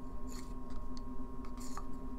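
Two brief, faint scrapes as a small metal clip is pushed into the neck of a plastic bottle of metal-bluing liquid, one about a third of a second in and one near the end, over a steady faint electrical hum.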